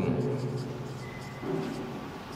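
Marker pen writing on a whiteboard, faint scratchy strokes, while a man's voice trails off in a held hesitation sound and gives another short one about a second and a half in.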